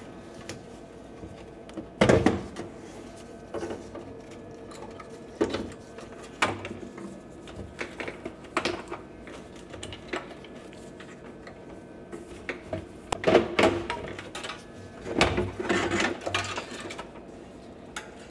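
Power supply cables being unplugged inside a desktop PC's steel case and the power supply unit pulled out: irregular clicks of plastic connectors and knocks and rattles against the metal chassis. The loudest knock comes about two seconds in, with a busier run of rattling near the end as the unit comes free.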